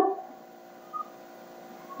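A spoken word trails off, then a pause holding only faint steady electrical hum from the recording setup, with one tiny short blip about a second in.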